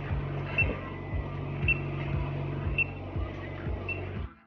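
Lab treadmill running at walking pace with a steady hum, footfalls thudding about twice a second, and a short high beep from the lab equipment about once a second.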